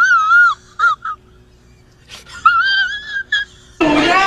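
High-pitched wailing voice that wobbles up and down in pitch for about half a second, breaks off into two short yelps, then comes back higher and steadier for about a second near the end.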